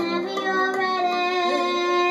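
A girl singing long held notes into a microphone over a pop karaoke backing track.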